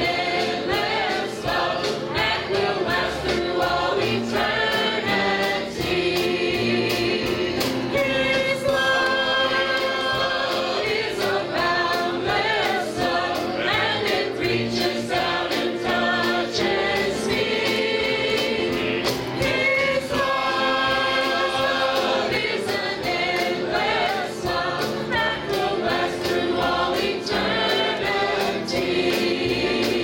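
Mixed church choir of men's and women's voices singing a gospel song together over a steady beat.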